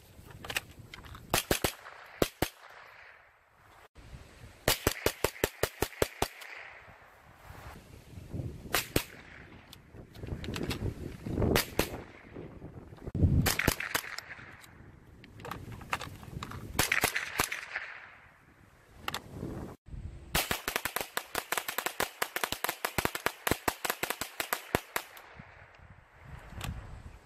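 Ruger 10/22 semi-automatic .22 LR rifle in an AR-15-style chassis being fired in quick strings of sharp shots, with scattered single shots between and a long rapid string near the end.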